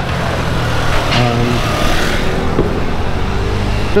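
A car driving past close by on a cobbled street, its engine running as a steady low hum.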